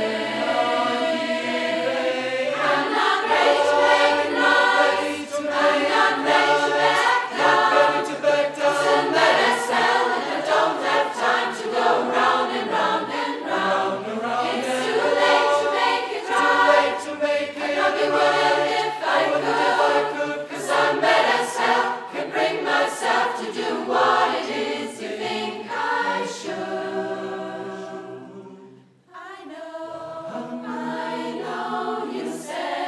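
Large mixed choir of men's and women's voices singing in several parts, with a brief break near the end before the singing picks up again.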